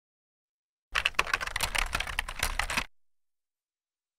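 Station-ident sound effect: a fast clatter of clicks like typing on a keyboard, starting about a second in and lasting about two seconds, then cutting off.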